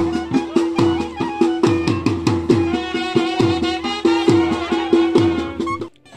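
Wedding band music: drums beating a fast, even rhythm of roughly three strokes a second under a held note and a wavering wind-instrument melody. It cuts off abruptly at the end.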